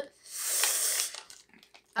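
A person hissing breath through the teeth for under a second, a reaction to the sting of a wasabi-flavoured almond.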